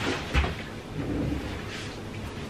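Movement noise of a person shifting in a swivel office chair at a small table: a dull thump about a third of a second in, then low rumbling.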